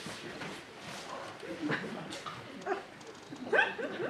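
A person's voice making short wordless sounds, with a brief rising cry about three and a half seconds in.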